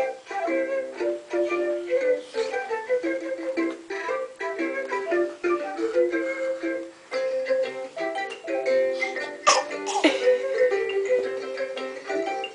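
A light plucked-string tune of short, quick notes playing from a child's toy MP3 player. A brief sharp sound about nine and a half seconds in is the loudest moment.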